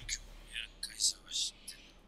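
Quiet whispered speech in several short hissy bursts.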